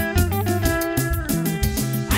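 African gospel band music in an instrumental passage: a guitar plays a melodic line over bass and a steady drum beat.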